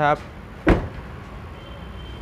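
A car door shut once, a single solid thud about two-thirds of a second in, followed by a low steady hum.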